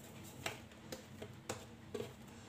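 Light sharp taps and knocks of hands and dough against a glazed clay plate while dough balls are shaped, about five in two seconds, the loudest about half a second in.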